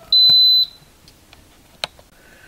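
Instant Pot Ultra Mini control panel beeping once, a single steady high beep of about half a second, as the steam program starts. A short sharp click follows near the end.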